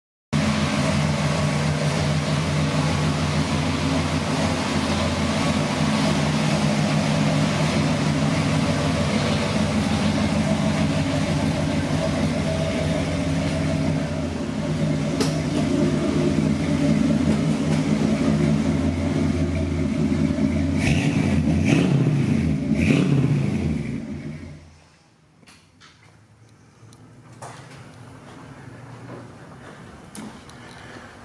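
A 460 cubic-inch Ford big-block V8 with headers and two-chamber Flowmaster mufflers, idling steadily. Near the end it is blipped a few times, then switched off.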